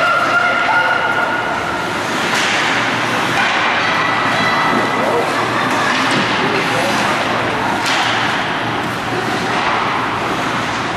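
Ice hockey rink sound during play: a steady noisy wash of skates and sticks on the ice, with voices calling out and a couple of sharp knocks, about two and eight seconds in.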